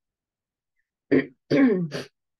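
A woman clearing her throat about a second in: a short catch, then a longer voiced part.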